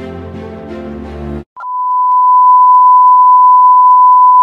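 Background music that cuts off about a second and a half in, followed after a brief gap by a loud, steady, single-pitch beep of about 1 kHz: the test tone of a colour-bar test card.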